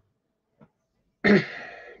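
A man's single loud cough, clearing his throat, about a second in, after a near-silent start with a couple of faint clicks.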